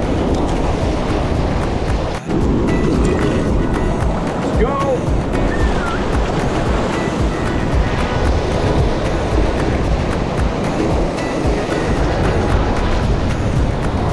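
Sea surf breaking and washing over rocks, a steady loud rush of water, with background music playing under it.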